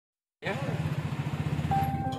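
A small engine running with a fast, even low pulse, about ten beats a second, starting about half a second in, with a brief voice over it. A steady musical note comes in near the end.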